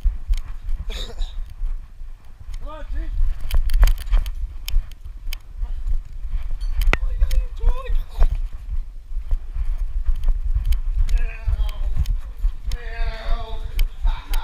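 Handling noise from a GoPro strapped to a dog's back harness as the dog moves about: a constant low rumble with many sharp clicks and knocks.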